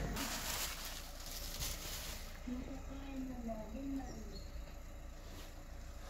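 Bubble wrap rustling and crinkling for about the first two seconds as a new part is unwrapped from it. After that it is quieter, with a faint murmuring voice.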